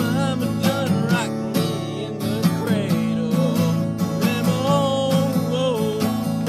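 A man singing a folk song while strumming a steel-string acoustic guitar in a steady rhythm, the voice coming in lines over the strums.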